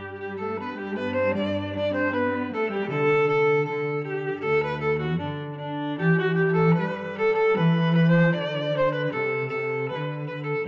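Background music of bowed strings: a violin melody in long held notes over a low cello line, the notes changing every second or so.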